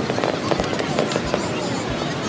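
Aerial fireworks bursting, heard as a few booms about half a second apart over a steady background hubbub.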